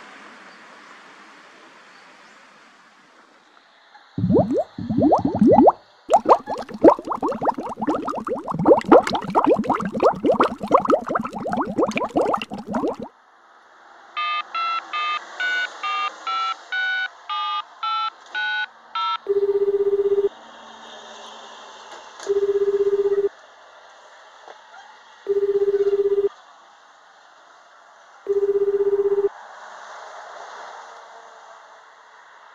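A roadside emergency telephone is handled with clattering and rubbing. Then about a dozen keypad tones are dialed in quick succession. The call then rings through, heard as the Japanese ringback tone: a steady low beep about a second long, repeated four times at three-second intervals, with no answer yet.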